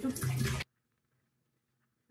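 Running tap water, with a woman's voice over it, for just over half a second, then a sudden cut to near silence.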